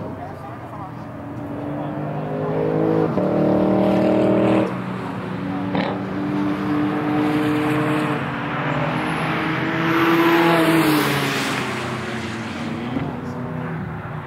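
Race cars lapping a circuit, heard from trackside: engines revving up and down through the gears. One engine builds up and cuts off sharply about five seconds in, and another swells loudest and falls in pitch as it passes around ten seconds in.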